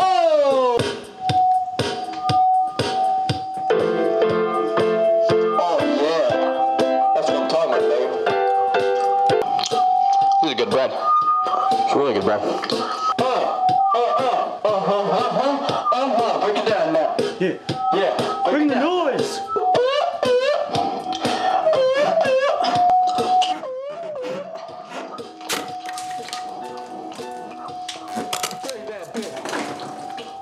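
Electronic keyboard music with long held notes and many sharp clicks, and a man's voice vocalising along without clear words. It gets quieter about 24 seconds in.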